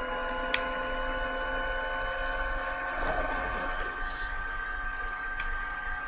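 A steady hum of several tones throughout, with a few light clicks and handling noises as a hand cream container is opened.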